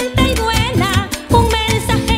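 Gaita zuliana music: an instrumental passage with a steady low drum beat under a lead melody that bends in pitch.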